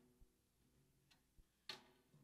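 Near silence broken by faint taps and handling clicks on a snare drum between playing, with one light tap near the end that rings briefly.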